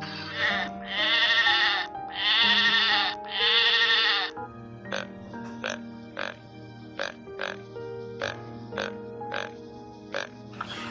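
Background music with steady notes and a regular ticking beat; over it in the first four seconds, three long, loud, quavering bleat-like animal calls.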